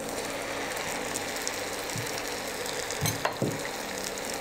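Onion-tomato masala frying in oil in a pan: a steady sizzle as chopped mushrooms are tipped in, with two light knocks a little after three seconds in.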